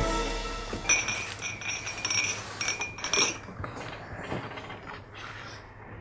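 Tea glasses and a metal teapot clinking on a tray as it is set down, with ringing chinks in two stretches, about a second in and around three seconds; music fades out at the very start.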